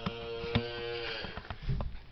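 A cow mooing: one long, level call lasting just over a second, followed by a few knocks and a low thump.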